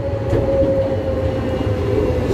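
Taiwan Railways EMU500-series electric commuter train pulling into the station: a steady rumble of wheels on rail that grows louder as it comes alongside, with a single whining tone that sinks slightly in pitch.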